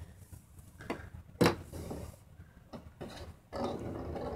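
Small 3D-printed plastic sphericon rolling across a metal tabletop, giving a few light clicks and clacks as it tips from one rolling surface onto the next; the sharpest click comes about a second and a half in.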